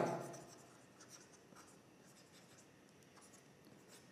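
Faint scratches and light taps of a pen stylus writing on a tablet surface, in short irregular strokes.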